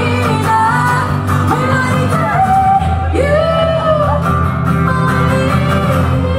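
Live acoustic performance: a strummed acoustic guitar under a sung melody.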